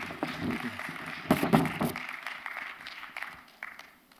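Congregation applauding, the clapping dying away over the last second or two.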